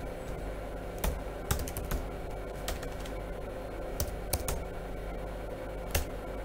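Computer keyboard keys clicking in a handful of separate, irregular keystrokes as a command is typed into a terminal.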